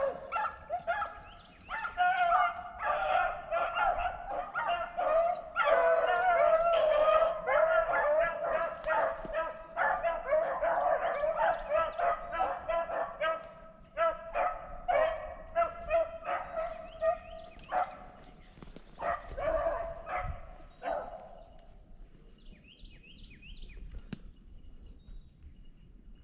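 A pack of hunting dogs baying and yelping on a trail through the brush, many overlapping cries in a steady run. The cries break off about 21 seconds in.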